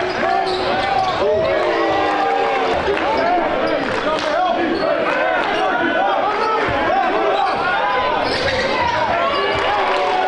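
Basketball sneakers squeaking on a hardwood court, many short squeaks overlapping, with the ball bouncing and voices echoing around a large gym.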